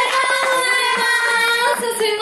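Women singing into handheld microphones, holding long notes.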